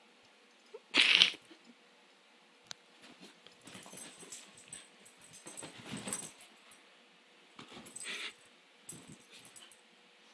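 A Shetland sheepdog gives two short, sharp barks, a loud one about a second in and a weaker one about eight seconds in. In between there is scuffling and rustling as the dog moves about.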